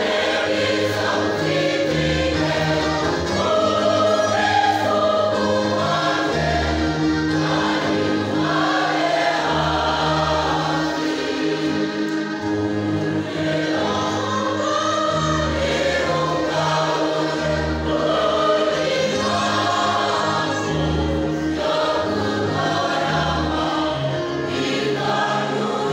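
A large choir singing a sacred song in several parts, with low bass notes changing every second or two beneath the upper voices.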